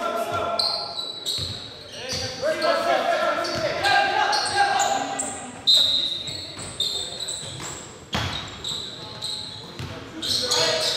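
A basketball bouncing on a hardwood gym floor amid players' indistinct calls, echoing in a large hall.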